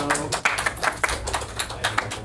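A small audience applauding: a scatter of individual hand claps, thinning out toward the end.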